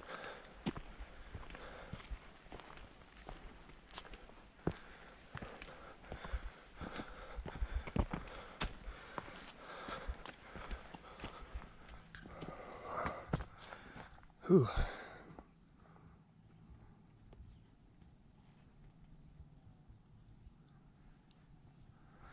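Footsteps of hikers walking on a dirt trail strewn with dry leaves, an irregular run of steps that stops about two-thirds of the way through, leaving quiet.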